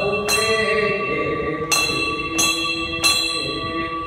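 Brass temple bell rung in repeated strokes during a Ganesh aarti, each stroke renewing a long metallic ring, about one strike every 0.7 s.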